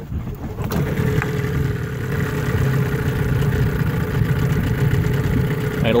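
1975 Evinrude 15 hp two-cylinder two-stroke outboard starting easily on the first pull and then running at a steady idle from about a second in.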